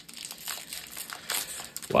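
Foil booster-pack wrapper crinkling as it is handled, a run of small irregular crackles.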